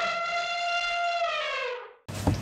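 A single held electronic tone used as a title-card sound effect. It sounds steady, then glides down in pitch near the end and cuts off.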